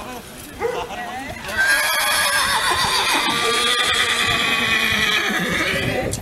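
A horse whinnying loudly in one long call of about four seconds, starting about a second and a half in, with hoofbeats clip-clopping on the road.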